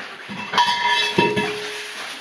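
A steel diving cylinder knocked twice against rock as it is handled, each knock leaving a clear ringing metallic tone, the second one lower.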